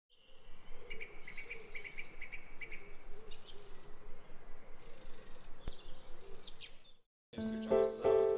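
Birds singing: a run of quick repeated chirps, then several rising whistled notes, over a faint steady background hiss; it all cuts off just before seven seconds. Piano music begins near the end.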